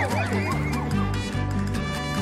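Film score with a steady, repeating bass line, under a flurry of many overlapping high, warbling creature calls that thin out about a second in.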